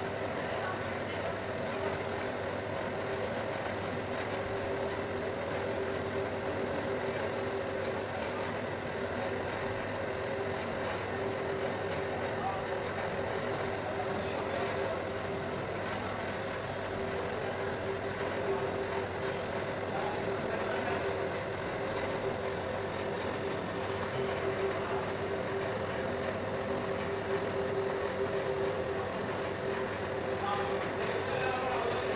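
Electric motor of a baati dough-ball-forming machine running steadily, a constant hum with mechanical whirring from its roller drive.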